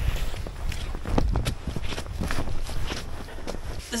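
Footsteps of a person walking, a steady series of steps about two a second.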